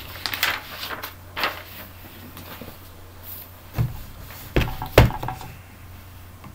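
A large book being handled on a desk as a page of the Talmud volume is turned: a scattering of short knocks and paper rustles, the loudest knock about five seconds in, over a low steady hum.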